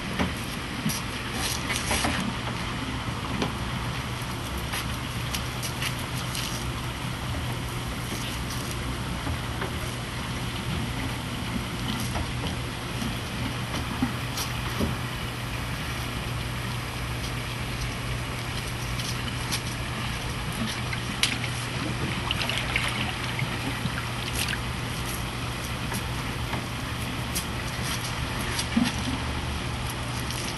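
Water rushing and splashing into a concrete fish-hatchery tank, churning the surface to foam, over a low steady hum, with a few light knocks scattered through.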